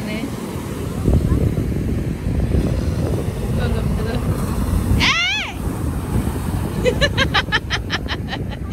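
Breaking surf with wind buffeting the microphone, a loud steady rumble. A girl's high-pitched shriek rises and falls about five seconds in, and near the end comes a rapid run of high laughing.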